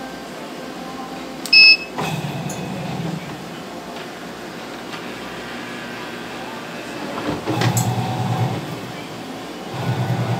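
A washing machine control panel gives one short electronic beep as a button is pressed, about one and a half seconds in. A relay click follows, and a low, rough electrical hum from the machine comes on for about a second, then again later in bursts.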